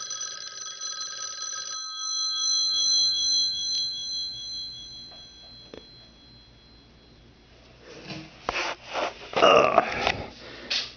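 1968 Western Electric 554 wall phone's mechanical ringer: the clapper, driven by about 90 volts AC, rattles between the twin brass bells for a short ring of under two seconds, and the bells then ring out and fade over a few seconds. Near the end come several knocks and clatter as the handset is handled.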